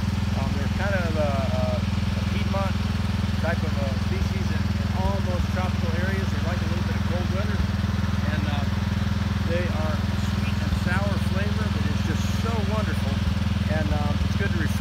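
A steady low engine drone runs throughout, with fainter talking over it.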